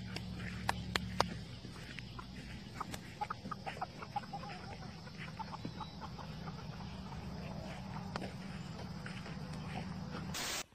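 Chickens clucking in short, scattered notes over a steady low hum.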